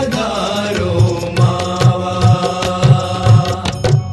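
Closing bars of a Gujarati devotional kirtan: a sung line fades into a held instrumental chord, with regular drum beats and sharp cymbal-like strikes, ending on a final stroke that rings out.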